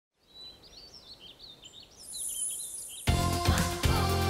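Birds chirping softly, joined by a high sparkling shimmer, then the cartoon's theme song starts suddenly and loudly about three seconds in.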